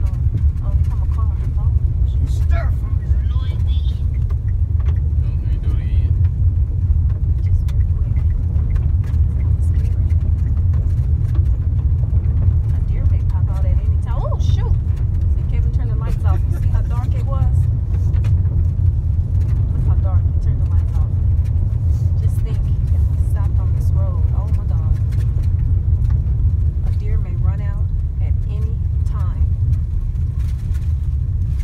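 Steady low rumble of a vehicle driving, heard from inside the cabin, with faint voices now and then over it.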